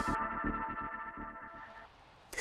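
Electronic segment jingle with sustained synthesizer notes over a regular beat, fading out and dying away by the end.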